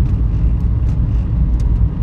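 Steady low rumble of engine and tyre noise inside the cabin of a moving car.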